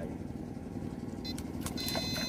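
Battery-powered electrofishing shocker giving a thin high whine in short spells, about a second in and again near the end, over a steady low rumble.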